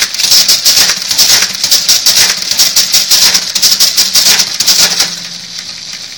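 Facit ESA-0 electric pinwheel calculator working through a long automatic multiplication: a rapid, continuous mechanical clatter over a steady motor hum, stopping about five seconds in as the product is reached.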